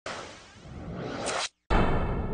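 News station logo sting: a whoosh that dips and then swells, cutting off about a second and a half in, then after a brief gap a loud musical hit with a held chord.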